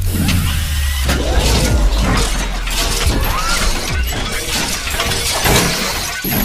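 Cinematic logo-reveal sound effects: a deep, sustained bass rumble under a dense run of crashing, glassy shattering hits.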